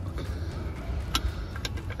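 A few light metallic clicks as fingers handle a bolt and pipe clamp on a lorry engine, over a steady low rumble.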